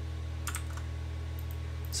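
A few short clicks of a computer keyboard, about half a second in and again around a second in, over a steady low hum.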